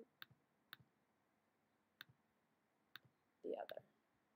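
Four faint, separate computer mouse clicks, each a quick double tick of the button going down and coming back up, spread over about three seconds as files are picked in an open-file dialog.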